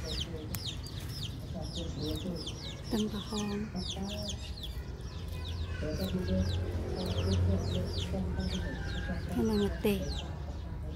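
Chickens clucking: a hen's lower clucks come a few times, over a steady stream of rapid, high, downward chirps like chicks peeping.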